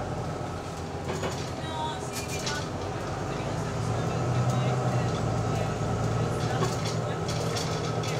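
Bus engine and drivetrain running, heard from inside the passenger saloon as a steady low hum that swells a little midway, with light rattles and clicks from the interior.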